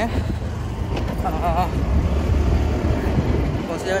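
Steady low rumble of wind buffeting the microphone and road and traffic noise, heard while riding on a two-wheeler along a street. A brief wavering voice-like sound comes about a second and a half in.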